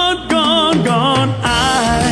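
A man singing live into a microphone, holding wavering notes with vibrato over steady instrumental accompaniment.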